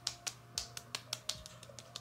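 Palms patting toner into the skin of the face: a run of quick light slaps, about four or five a second.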